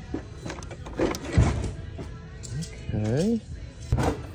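Cardboard board game box and its folded game board being handled and lifted out: scattered knocks and rustling, with a loud thump a little over a second in.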